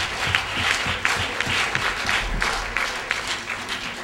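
Audience applauding, many hands clapping together.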